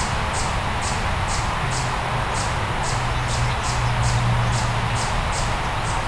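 Steady outdoor background: a high-pitched chirp repeating a little over twice a second over a low steady hum, which grows slightly louder about four seconds in.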